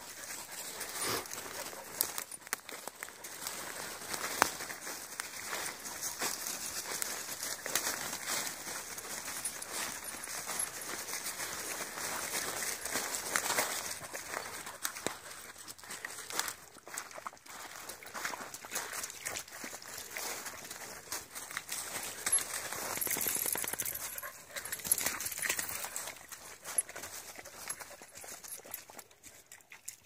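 Footsteps crunching through dry fallen leaves, with a dog panting.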